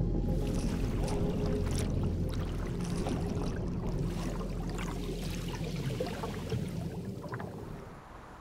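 Underwater sound: scattered clicks and bubbling over a steady low hum, fading away near the end.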